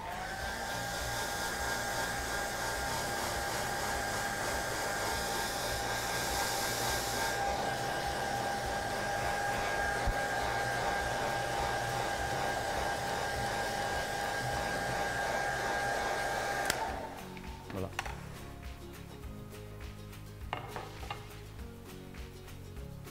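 Handheld hair dryer switched on, its whine rising briefly as it spins up, then blowing steadily onto a freshly washed silk-screen mesh to dry it before the next print. It cuts off suddenly about three-quarters of the way through, leaving faint background music.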